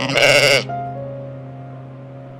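A lamb bleats once, a short call about half a second long near the start, over soft background piano music.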